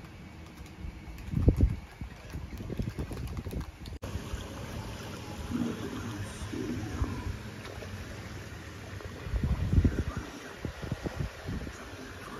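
Wind buffeting the phone's microphone in irregular low rumbling gusts, the strongest about a second and a half in and again near ten seconds, over a steady outdoor background.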